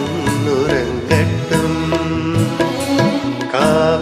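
Tamil Christian devotional song: a male voice singing a melodic line over instrumental backing with a steady beat.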